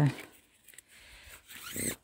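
A retractable dog lead's cord rasping through its reel in a short zip near the end; the lead has jammed and will not go back in.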